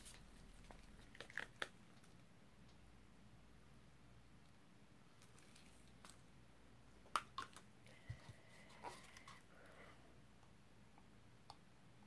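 Near silence: room tone with a few faint clicks and taps as plastic paint cups are handled, a pair about a second in and a cluster about seven to nine seconds in.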